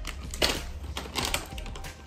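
Handling noise: a few short crackling rustles and taps, the loudest about half a second in.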